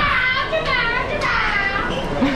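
A child squealing behind the listeners in three shrill, wavering cries, one after another, that they liken to a dying bird.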